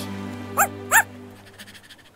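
Two quick, high, yappy barks from a cartoon puppy, about a third of a second apart, over a held background-music chord that fades away.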